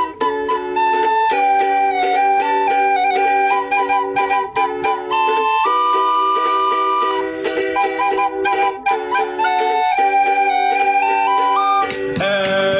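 Two recorders playing a folk tune together, one carrying a stepping melody while the other holds lower harmony notes, over a strummed ukulele.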